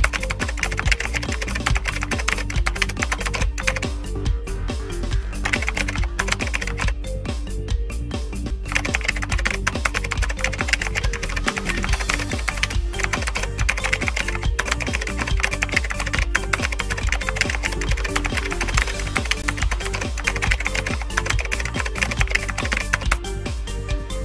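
Rapid typing clicks, a typewriter-style sound effect, over background music with a steady low bass line. The clicking stops briefly a couple of times.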